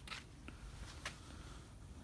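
Faint background noise with a few light clicks, the first three within the first second or so.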